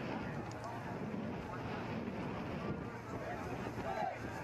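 Indistinct voices of players and spectators at an outdoor sports ground, no words clear, over steady background noise with some wind on the microphone.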